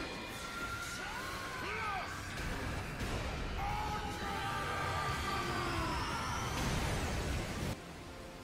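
Anime fight-scene soundtrack: dramatic music with a character yelling, under a high tone that rises slowly before the sound cuts off suddenly near the end.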